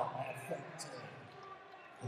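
A man says a word and gives a short laugh, then a few faint light knocks sound against the quiet background of the hall.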